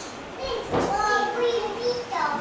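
Children's voices in a hall, with one high-pitched child's voice speaking through the second half.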